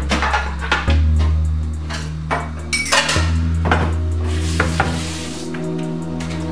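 Kitchen clatter: dishes and utensils clinking and knocking several times at the counter and sink, over background music with a low, steady bass.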